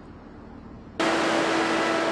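A transit bus running: a steady hiss with a low, even hum that starts suddenly about a second in, after a second of quiet street background.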